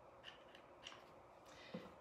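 Near silence broken by a few faint clicks from a hot glue gun's trigger as glue is squeezed out onto the canvas.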